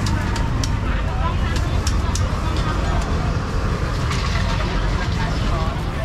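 Street-market bustle: people talking close by over a steady low rumble of motorbike traffic, with a few short clicks in the first couple of seconds.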